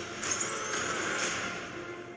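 Film trailer sound effect: a long hissing whoosh with a thin rising whistle starting about a quarter second in.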